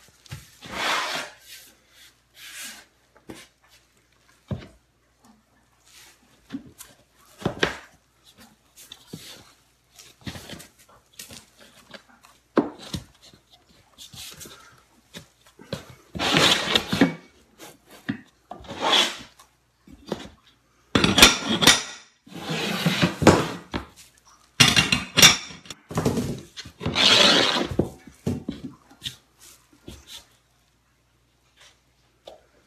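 Laminate flooring planks being laid by hand on a floor: irregular sharp knocks and clicks of the boards, with scraping and rubbing as planks slide over the floor, louder and busier in the second half.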